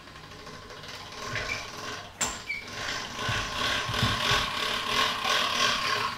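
Hand-cranked pasta machine running, its gears and steel rollers turning with a fast, even ratcheting rhythm as a sheet of pasta dough is fed through to thin it. A single sharp click comes a little after two seconds in.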